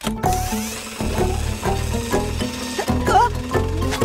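Fire-truck ladder ratcheting as it is cranked out and extends, over background music.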